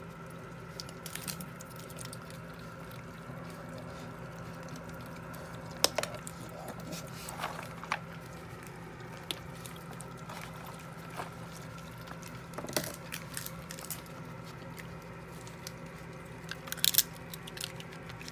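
A striped skunk chewing peanuts close up, with scattered sharp crunches and cracks every few seconds over a steady low hum.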